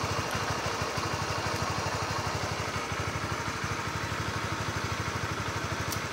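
Honda CB150R's single-cylinder four-stroke engine idling steadily, an even, fast run of firing pulses.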